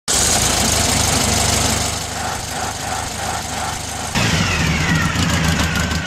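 An old car engine running. About four seconds in, the sound cuts to a lower, steadier hum with a falling whine.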